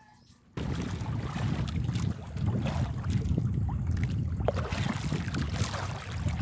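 Wind rumbling on the microphone over the wash of choppy sea around a small outrigger fishing boat. It cuts in suddenly about half a second in and stays steady and loud.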